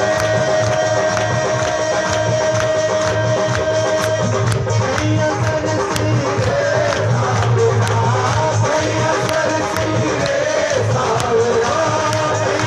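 Live devotional bhajan music: a steady beat of sharp percussion strokes, about three a second, over a held keyboard-like note. A wavering melody line comes in about five seconds in.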